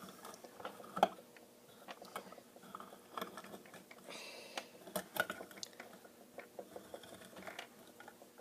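Faint, irregular clicks and taps of a tin can and its opened lid being handled.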